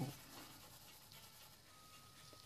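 Faint scratching of a pencil drawing and shading on paper, with faint background music.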